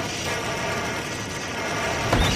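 Hand-held fire extinguisher spraying: a steady, even hiss.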